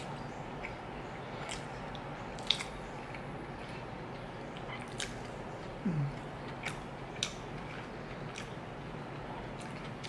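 A person chewing food close to the microphone, with scattered sharp wet mouth clicks and smacks. A brief low sound falling in pitch comes about six seconds in.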